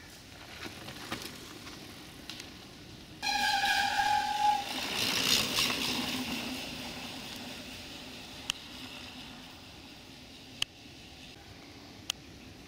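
A mountain bike passing close on a dirt trail: a sudden, loud, steady squeal from its brakes for about a second and a half, then the rush of knobby tyres on dirt that fades as the bike rides away. Two sharp clicks come later.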